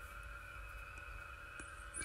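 Quiet room tone: a faint steady electrical hum with a thin high whine, and a faint mouse click or two in the second half.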